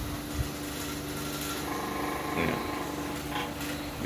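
Electric desk fans running with a steady motor hum, powered from a motorcycle battery through an inverter.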